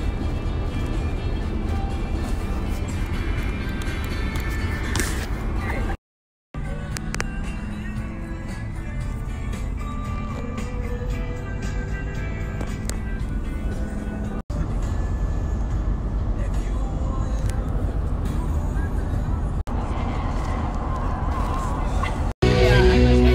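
Music and indistinct voices over the low rumble of a van driving, heard in several short clips joined by brief cuts to silence.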